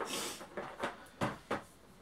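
Cardboard figure box being handled: a short scrape, then four light knocks as it is turned and stood upright on the table.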